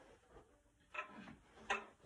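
Two faint wooden knocks, about a second in and near the end, from handling string instruments: a violin being put down and a viola picked up.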